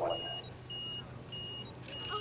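Electronic beeper sounding a steady high-pitched tone in short, evenly spaced beeps, a little under two per second.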